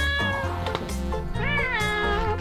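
A domestic cat meows once, a rising-then-falling call, over background music with a steady beat.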